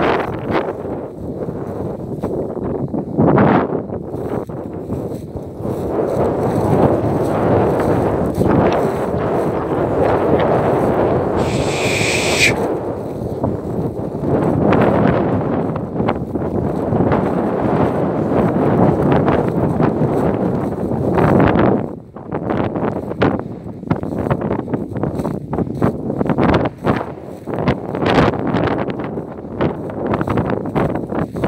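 Wind buffeting the microphone: a loud, steady low rumble. About twelve seconds in comes a brief higher-pitched sound lasting about a second. In the last third, a run of short crackles breaks through the rumble.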